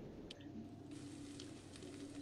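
Faint sizzle of mushrooms sautéing in a frying pan, with a few light ticks of a spatula stirring them, over a low steady hum.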